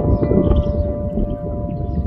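Background music of held, ringing bell-like notes that shift in pitch now and then, over a steady low rumbling noise.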